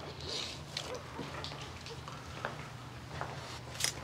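Soft handling sounds of a leather handbag being opened and gone through by hand: faint rustling and small scattered clicks.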